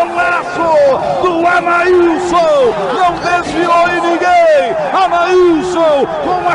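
Excited radio football commentary: a man talking fast and at high pitch, with a crowd faintly behind.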